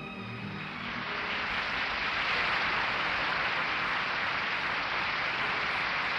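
Audience applauding steadily as the last notes of the orchestral backing die away in the first second.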